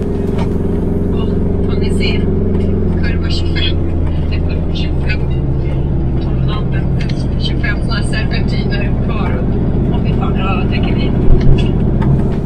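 Motorhome engine running steadily as the van drives, heard from inside the cab. The engine note shifts about five seconds in, and two sharp knocks come near the end.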